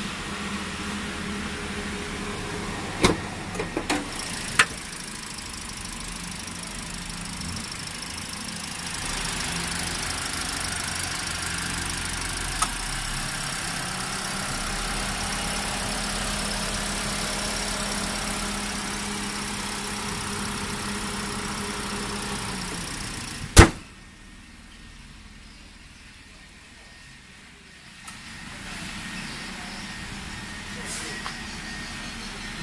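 Perodua Bezza's 1.3-litre four-cylinder petrol engine idling steadily. A few light clicks come a few seconds in. About three-quarters of the way through there is a single loud knock, after which the sound is much quieter.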